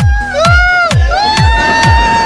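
Loud electronic dance music with a pounding kick drum a little over twice a second and a long, held high melody line, with a group of people cheering and shouting over it.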